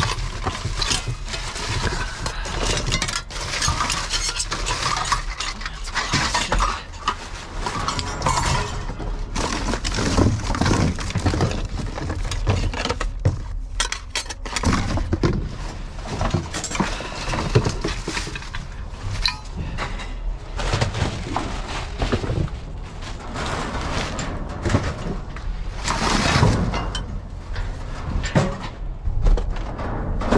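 Hands rummaging through dumpster scrap of cardboard boxes, plastic bags and cables: irregular rustling and crinkling with frequent clinks and knocks of hard items being shifted.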